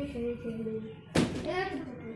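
People's voices speaking, untranscribed, with a held vocal tone through the first second. A short sharp noise comes about a second in.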